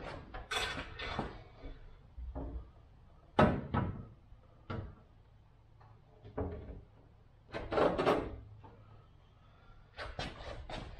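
Fuel tank of a 1952 MG TD being handled and set down onto the rear of the chassis: a handful of separate clunks and scrapes, the loudest about three and a half seconds in and again about eight seconds in.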